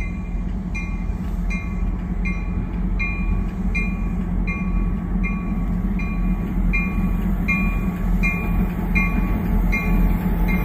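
Norfolk Southern diesel locomotives approaching slowly, their engines rumbling steadily and growing louder toward the end. A bell rings at an even pace throughout, about once every three-quarters of a second.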